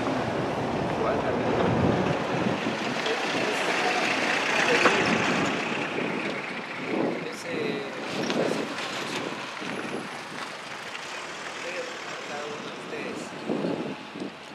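A road vehicle passing, its noise swelling to its loudest about five seconds in and then fading, with wind on the microphone and a man talking underneath.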